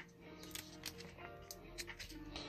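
Faint background music, with a handful of short soft clicks as the thin pages of a small address book are flipped.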